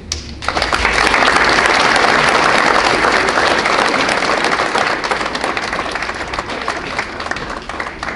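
Audience applauding. The applause starts about half a second in, is loudest over the next few seconds, then eases slightly.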